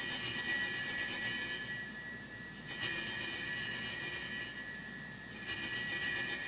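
Altar bells, a cluster of small hand bells, rung three times about two and a half seconds apart, each ring fading away. They mark the elevation of the chalice at the consecration of the Mass.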